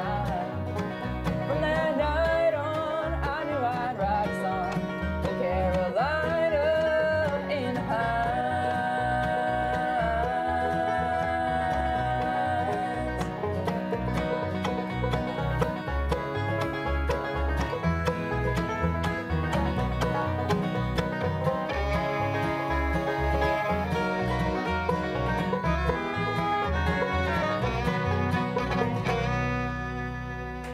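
Bluegrass band playing live: picked banjo, bowed fiddle, strummed acoustic guitar and a small acoustic bass guitar over a steady beat. The tune comes to its end right at the close.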